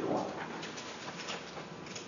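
Thin Bible pages being turned at a pulpit, a few soft papery rustles and flicks.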